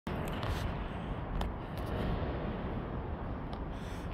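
Steady background noise, a low rumble with hiss above it, with a few faint clicks.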